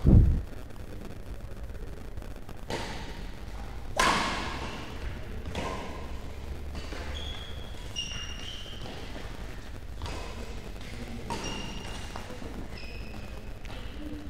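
Badminton rally in a reverberant hall: sharp racket strikes on the shuttlecock every second or two, with short high squeaks from shoes on the court floor. A heavy low thump comes right at the start and is the loudest sound.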